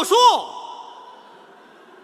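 A man's voice sings three short sung words, each note arching up and down in pitch, then a faint hall hush that slowly fades away.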